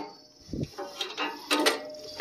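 A few light metal clicks and a knock as a socket wrench is fitted onto a newly installed spark plug on a zero-turn mower's engine.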